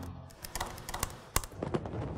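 Typing on a laptop keyboard: irregular key clicks, with one louder tap about one and a half seconds in.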